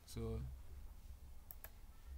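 Two computer mouse clicks in quick succession about one and a half seconds in, opening a software dropdown list, over a low steady hum.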